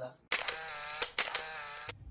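Electronic sound effect: a buzzy, steady tone with a few sharp clicks, starting abruptly and cutting off just under two seconds in.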